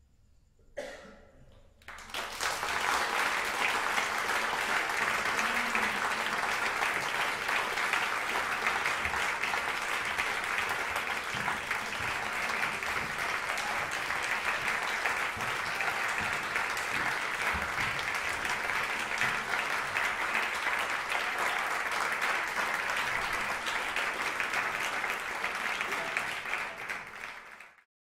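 Audience applause that breaks out about two seconds in, after a brief hush, and holds steady and dense until it is cut off abruptly at the very end.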